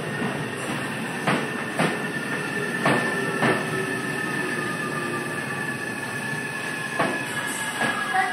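A Y000 series electric commuter train braking as it pulls in along a station platform. Its wheels click over rail joints in pairs, the clicks coming further apart as it slows, over a high whine that slowly falls in pitch.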